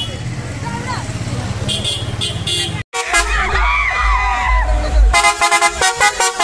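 A tourist bus's engine running with excited voices around it; then, after a sudden cut, young people shouting and cheering over heavy bass music. Near the end comes a rapid string of short horn blasts.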